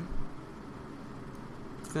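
Steady faint background hiss of room tone, with a brief low thump just after the start and a man's voice starting again at the very end.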